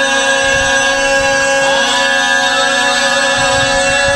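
A man's voice holding one long, drawn-out chanted note into a microphone, amplified, the pitch almost level with a slight bend about halfway through.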